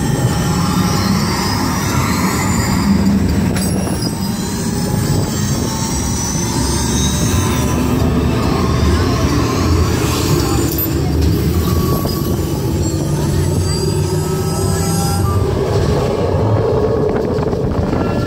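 Test Track ride vehicle running through a dark tunnel section: a loud, steady rumble of the car on its track, with faint high glides from the ride's sound effects over it.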